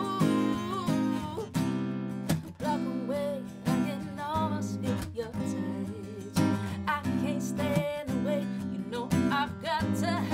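A woman singing to her own strummed acoustic guitar, with steady rhythmic strumming under a melody line that bends and holds notes.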